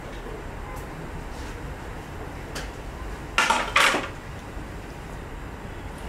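Two quick clattering knocks of kitchenware, about three and a half seconds in, over a faint steady hiss from a pot of broth boiling on a gas hob.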